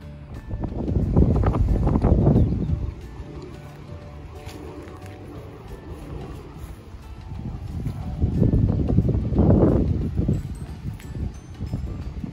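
Two gusts of wind rumbling on the microphone, each a couple of seconds long, with soft background music running underneath.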